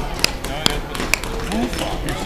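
Claw hammer striking a nail into a small wooden board, three sharp taps spaced about half a second apart.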